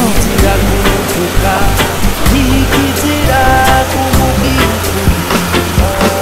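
Background music with a steady beat, a stepping bass line and held melodic notes.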